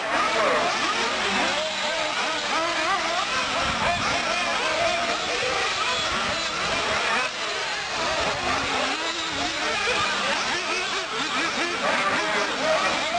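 Several radio-controlled off-road buggies racing together, their motors revving up and down in overlapping rising and falling whines.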